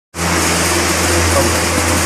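Steady low machine hum with an even hiss over it, cutting in right at the start and holding level throughout.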